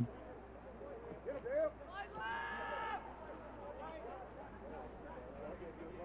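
Faint open-air ambience of a soccer field with distant voices of players calling out. About two seconds in, one drawn-out high shout lasts under a second and drops in pitch at its end.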